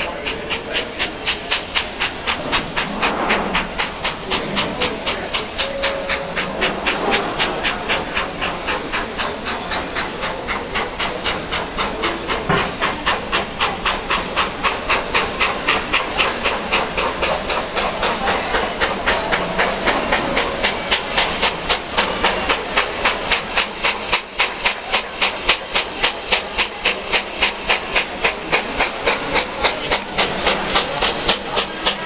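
Steam locomotive puffing as it draws slowly towards the platform, its exhaust beats in a fast, even rhythm over a steady hiss of steam, growing a little louder as it comes closer.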